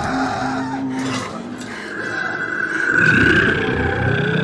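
Horror film soundtrack mixing score and creature sound effects: a held low note, then a high sustained shriek over a low rumble that swells to its loudest about three seconds in.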